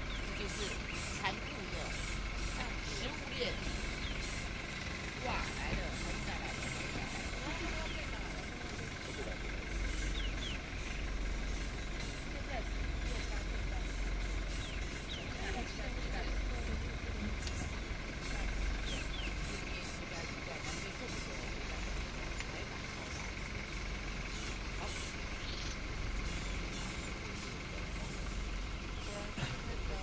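Quiet voices, too low to make out, over a steady low rumble that holds at the same level throughout.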